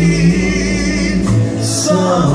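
Live rock band playing with sung vocals, with electric guitars, organ and drums, and held sung notes over a steady bass line.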